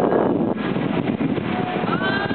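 Street traffic: cars driving past at low speed, with wind buffeting the microphone and voices mixed in.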